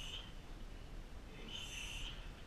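A man's sharp, hissing exhales through the teeth, the rhythmic Muay Thai-style breathing of a fighter drilling. One comes right at the start and a second near the end, each about half a second long.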